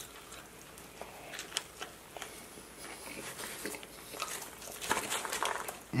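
A person chewing a mouthful of fried chicken sandwich, heard as scattered small wet mouth clicks and soft crunches.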